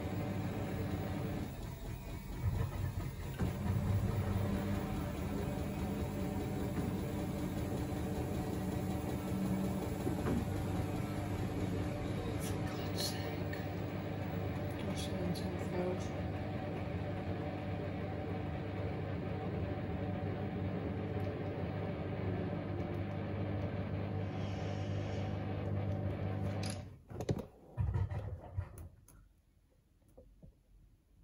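Samsung WW90J5456FW front-loading washing machine running with a steady low hum mid-cycle. The hum stops suddenly about 27 seconds in.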